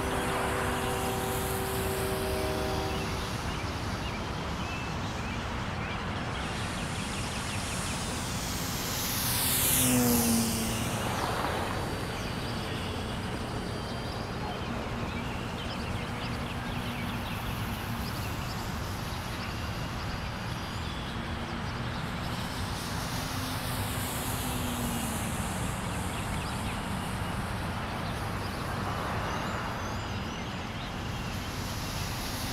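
RC Sbach 3D model airplane making fast passes: the whine of its motor and propeller swells and drops sharply in pitch as it goes by, loudest about ten seconds in, with a second, fainter pass later on. A steady hiss runs underneath.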